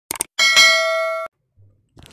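Subscribe-button animation sound effect: a quick double click, then a bright bell ding that rings for most of a second and cuts off suddenly.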